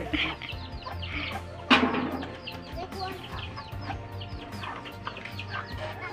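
Chickens clucking, with a single sharp knock a little under two seconds in.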